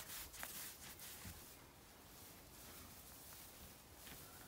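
Near silence: faint room tone, with a couple of faint soft ticks in the first second and a half.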